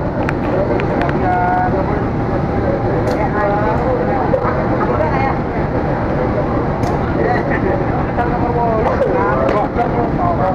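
Diesel locomotive running as it slowly pulls a passenger train into the station, a steady low rumble, with people's voices over it.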